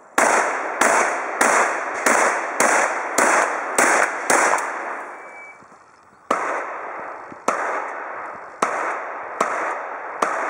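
Pump-action shotgun fired rapidly, nine shots about half a second apart, each trailing off in echo. After a short break, four more shots follow about a second apart.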